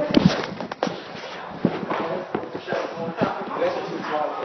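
Several voices talking and laughing, with a few scattered sharp knocks and footsteps.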